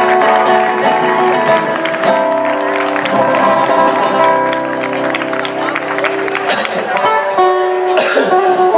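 Flamenco cante: a man singing a media granaína in long, wavering held notes, accompanied by a flamenco guitar plucked and strummed beneath him.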